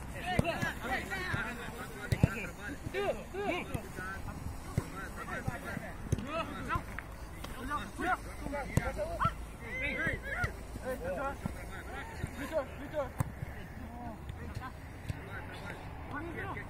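Players' short shouts and calls overlapping during a small-sided football game, with the sharp thud of the ball being kicked now and then.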